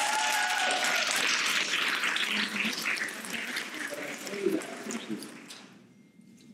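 Audience applauding, with a few voices calling out over it; the clapping dies away near the end.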